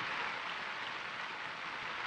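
Cricket crowd applauding with a steady, even patter of many hands clapping.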